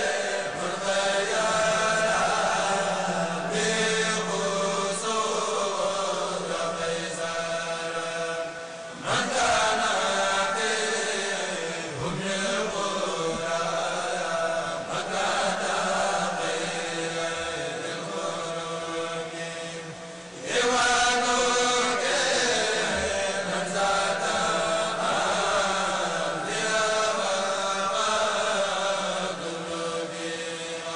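Men's voices chanting Mouride Islamic devotional verse together into microphones over a PA, in long melodic phrases. The chant breaks off briefly and comes back in louder about nine seconds in and again about twenty seconds in.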